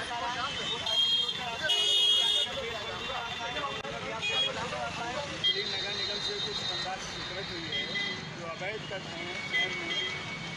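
Men's voices on a busy street over traffic noise, with vehicle horns sounding: the loudest about two seconds in, others later.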